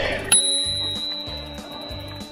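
A single bicycle bell ding about a third of a second in, ringing on as one long high tone that slowly fades, over background music with a steady beat.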